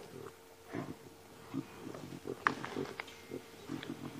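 Lions growling at each other in short, irregular bursts while feeding together on a buffalo carcass, with a sharp click about two and a half seconds in.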